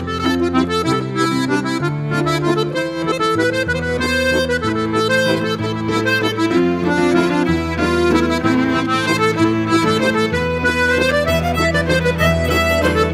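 A live folk band plays a tune led by accordion, with guitar and fiddle. Held bass notes change about once a second under the accordion melody.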